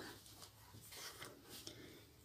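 Near silence with a few faint soft rustles from hand-sewing: thread being drawn through fabric.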